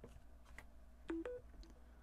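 A faint, short two-note electronic chime, low then higher, signalling that wireless charging of a Samsung Galaxy Z Flip 4 has started as it is set on the charging pad. A few light clicks of the phone and case come just before it.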